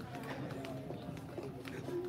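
Footsteps on a hard, polished floor, several short steps a second from people walking and a child skipping along, with indistinct voices in the background.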